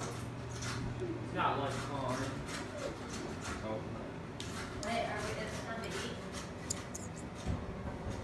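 Kitchen scissors snipping butcher's string off a roast beef loin: a series of short, sharp snips, with the aluminium foil under the meat crinkling.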